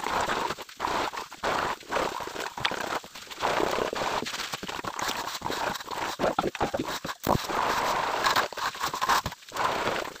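Plastering tools scraping and rubbing over wet cement plaster on a wall, in irregular strokes with short breaks and occasional sharp knocks.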